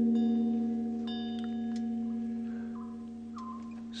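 Background music of steady, low, bell-like ringing tones that slowly fade. A light metallic chime is struck about a second in.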